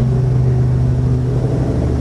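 A steady low hum holding one pitch, which stops abruptly just after two seconds.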